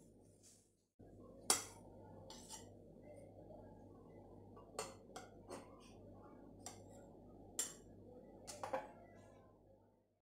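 A knife clinking and tapping against a plate while a cake is cut into slices: a handful of faint, irregular metallic clicks, the loudest about one and a half seconds in, over a steady low hum.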